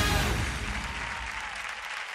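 Studio audience applauding, steadily fading, as the loud musical intro cuts off just at the start.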